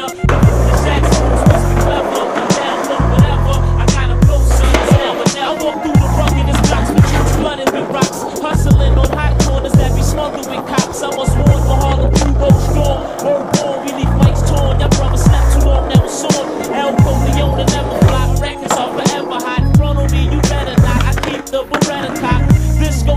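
Skateboarding sounds: boards popping and landing, and wheels rolling on concrete, heard together with a music track that has a heavy, pulsing bass beat.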